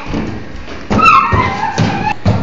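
A child's running footsteps thudding on a padded floor mat, a few heavy steps close together in the second half, with brief snatches of music or voice over them.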